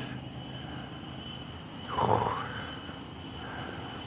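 Quiet rainforest ambience with a faint, steady high-pitched tone throughout. A brief, louder noise comes about halfway through.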